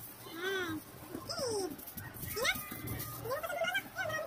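A run of short, high-pitched wordless calls, each sweeping up and down in pitch, about two a second, with a brief hiss about a second and a half in.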